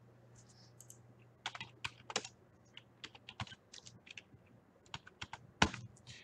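Faint, irregular typing and key clicks on a computer keyboard, with a low steady hum that fades out about halfway through.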